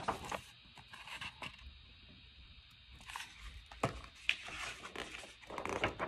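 Pages of a hardcover picture book being turned and handled: soft paper rustling with a few sharp taps, the loudest about four seconds in, and a short burst of rustling near the end.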